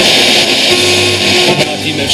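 Music from a radio station playing through the speakers of a Toshiba RT-6036 boombox while its tuning dial is being turned.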